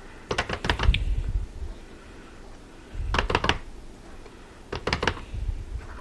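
Silicone spatula scraping wheat paste off a metal mesh sieve into a plastic bowl, with quick clicks and taps against the sieve and bowl in three short bursts.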